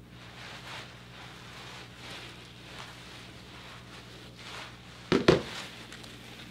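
Faint, soft rustling of dry hair being worked through with a comb, over a steady low hum. A little after five seconds in come two sharp, loud knocks in quick succession.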